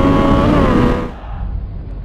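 Motorcycle engine running at steady revs, its pitch easing down slightly about half a second in. After about a second the sound drops and turns muffled, leaving only a low rumble.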